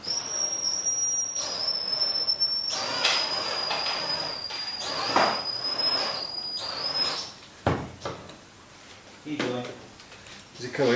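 Cordless drill-driver running for about seven seconds, driving a fastener through a wooden rubbing strake into a boat hull. Its high motor whine steps down slightly in pitch twice as the fastener takes load. It stops, and a sharp click follows.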